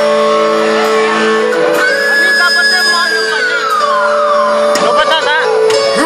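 A live band playing loudly, with sustained chords. Around the middle, a long high lead note holds and then slides down in pitch.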